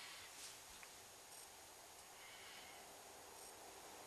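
Near silence: faint background hiss with a couple of tiny ticks.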